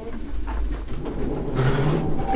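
Loaded camera dolly rolling along its metal track: a steady low rumble, with a brief hissing noise near the end.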